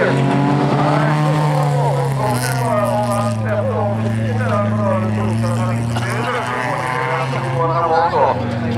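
Several folkrace cars racing on a dirt track, their engines revving hard, the pitch repeatedly rising and dropping over a steady lower drone.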